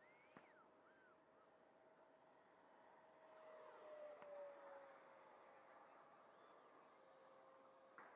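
Faint, distant whine of a radio-controlled electric ducted-fan jet flying high overhead. It swells a little around the middle and then drops slightly in pitch. A few faint chirps come near the start.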